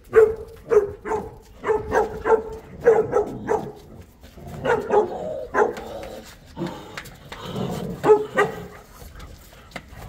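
Boerboels (South African mastiffs) barking in play, short barks coming in quick runs of two or three, with a lull about four seconds in.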